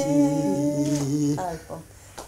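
An unaccompanied voice humming a long held note, which breaks off about a second and a half in.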